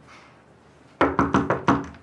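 Five quick knocks by hand on a panelled wooden door, about a second in.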